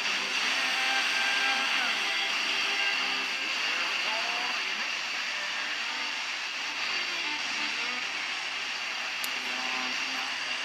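FM radio receiver tuned to 106.9 MHz, playing a weak broadcast: faint music and a voice under a steady hiss of static.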